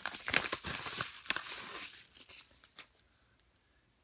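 Kraft padded bubble mailer crinkling and rustling as it is handled and opened, thick for about two seconds, then tapering into a few faint rustles as the contents come out.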